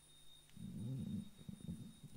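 A low, muffled voice murmuring for about a second and a half, starting about half a second in, with no clear words.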